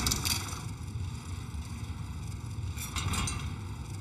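Sound-design effects for an animated mechanical rank counter: a steady low rumble, with a brief cluster of mechanical clicks at the start and another about three seconds in as the number drums turn.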